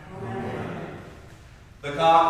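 A man speaking aloud, quieter through the first half, with a short pause before louder speech resumes near the end.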